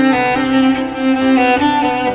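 Bowed cello playing an instrumental cover of a pop song: a slow melody of held notes, changing pitch every half second or so.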